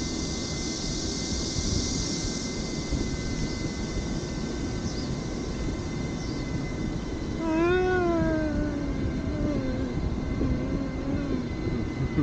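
A woman's long drawn-out yawn, voiced, starting about seven and a half seconds in, its pitch rising briefly then sliding down and trailing off in a fainter wavering tone. Under it, steady wind and rolling noise from riding a pedal surrey.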